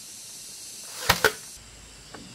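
Cordless nailer firing about a second in: a brief build-up, then two sharp snaps in quick succession as it drives a nail through a wooden slat into a bamboo frame.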